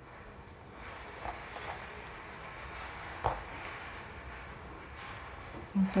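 Faint handling sounds of hands tying a knot around a small bunch of wool yarn, with one light tap about three seconds in.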